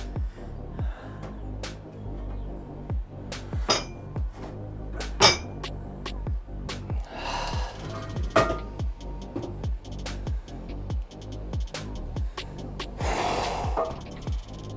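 Background music with a steady beat, over sharp metal clinks of weight plates being slid off a bar and set down, the loudest about five seconds in, with others near four and eight seconds.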